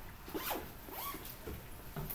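A zipper pulled in a few short strokes, as when a bag is closed up at the end of the class.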